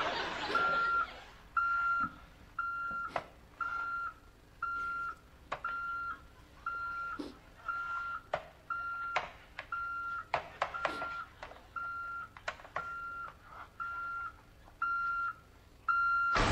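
Electronic alarm clock beeping: one short, high beep about every second, repeating steadily. A few faint clicks and knocks fall between the beeps.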